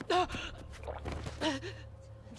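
Two short gasping vocal cries, one just after the start and another about a second and a half in, over a steady low hum.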